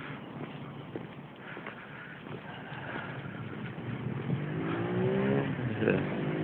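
A car engine accelerating and growing louder over the second half. Its note rises in pitch, drops back and rises again, like a gear change.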